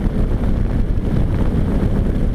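Steady wind rush on a helmet-mounted microphone, over the road and engine noise of a 2004 Suzuki V-Strom 650 motorcycle cruising at speed.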